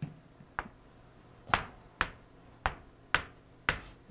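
Chalk on a chalkboard: about seven short, sharp taps and strokes, roughly one every half second, as lines are drawn.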